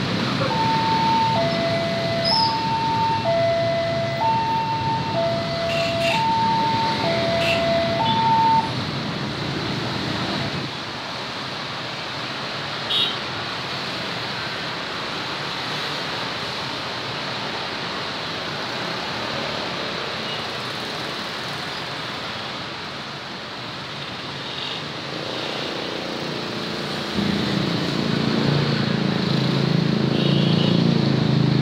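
Electronic two-tone railway level-crossing warning alarm, a higher and a lower tone alternating about once every two seconds, which stops about nine seconds in as the boom barrier lifts after the train has passed. Motorcycle and car traffic crossing the tracks runs underneath, with one motorcycle engine passing close near the end.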